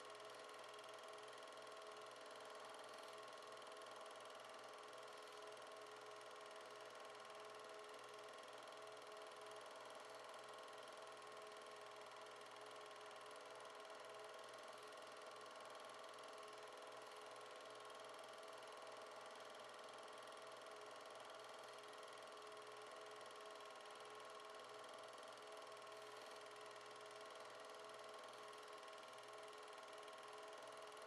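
Near silence: a faint steady hum with hiss.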